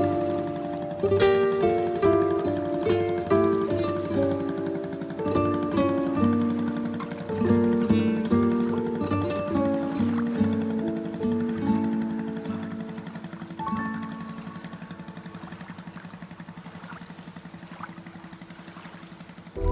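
Background music: a melody of short plucked notes over a steady low pulse, turning softer and quieter about fourteen seconds in.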